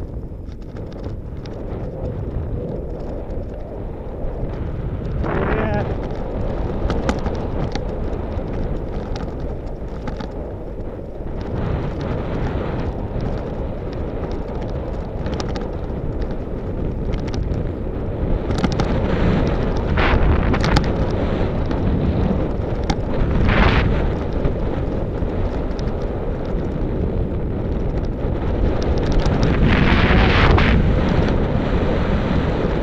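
Wind buffeting the microphone of an action camera on a moving bicycle: a steady low rumble that grows louder toward the end, with a few brief sharper sounds along the way.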